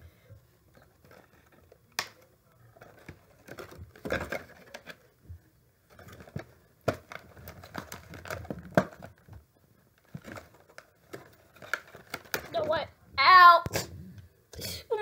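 Plastic doll packaging rustling, with scattered small clicks and snaps as the tiny plastic fasteners holding the doll to the box are worked loose and pulled out. A short, loud vocal exclamation near the end.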